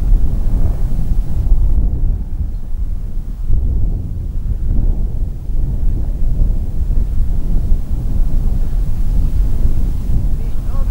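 Wind buffeting the camera's microphone: a loud, gusty low rumble that rises and falls throughout.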